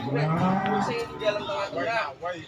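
Cattle mooing: one call about a second long that rises in pitch, then levels off.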